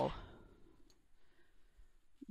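Faint handling of a discbound paper planner, with one light click about a second in, as pages are worked off its plastic discs.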